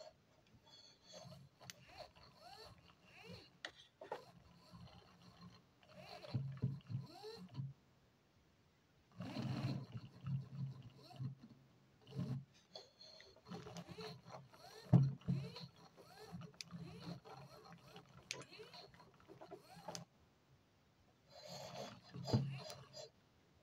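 Car wiper motor and its gearbox, run as a servo by a BTS7960 H-bridge driver, whirring in short stop-start bursts of a second or two as it swings to follow the radio transmitter's stick. Its pitch glides up and down, with light clicks in between.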